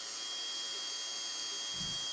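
KTM 690 electric fuel pump running steadily with a constant high whine and hiss, pushing against a closed gauge line with no fuel flowing out. Pressure builds only slowly to about 4 bar, short of the roughly 6 bar such a pump should reach; the mechanic takes this for a weak, failing pump.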